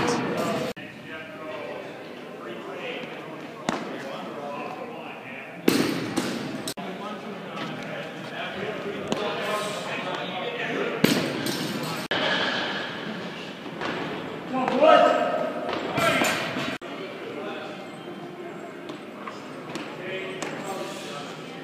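Indistinct voices echoing in a large indoor hall, with several sharp, heavy thuds scattered through it.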